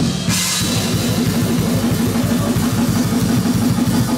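Live death metal band playing: fast bass-drum strokes drive under distorted electric guitars and bass guitar, with a cymbal crash about a third of a second in.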